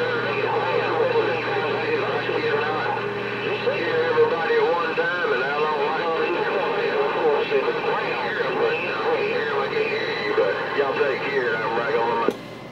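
Garbled, unintelligible voices coming in over a Galaxy CB radio's speaker, under steady whistling tones and static; a low hum drops out about four seconds in.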